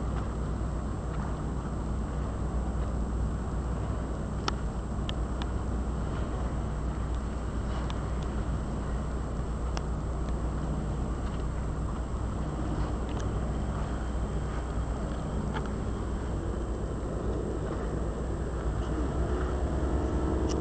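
A boat's engine running steadily, a low drone, mixed with the rush of wind and water.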